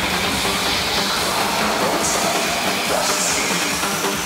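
Dark psytrance DJ set playing loud over a club sound system: a dense, distorted electronic texture with a thin high tone slowly rising through it.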